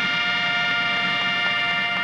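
Three military fanfare trumpets holding one long, steady note together.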